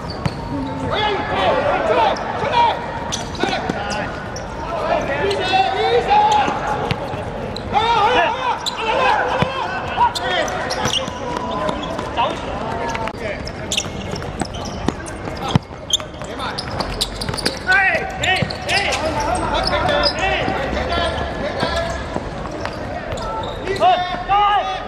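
Players' voices shouting and calling out during a football match, with the sharp thud of the ball being kicked now and then.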